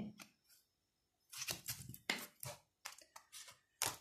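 Tarot cards being handled and shuffled: a run of short, crisp papery snaps and rustles starting about a second and a half in.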